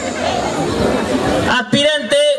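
Crowd noise from a large outdoor audience, many voices at once. A single voice cuts in over it about one and a half seconds in.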